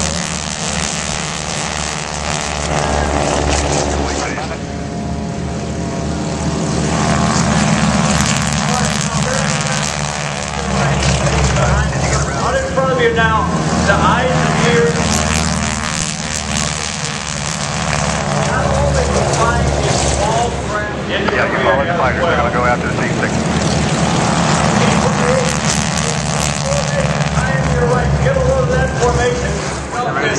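Propeller aircraft engines of North American T-6 Texan trainers running at high power as they take off and fly past. A steady propeller drone swells and fades several times.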